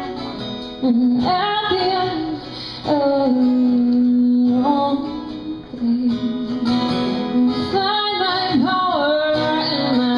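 A woman singing a slow song to acoustic guitar accompaniment, holding several long notes.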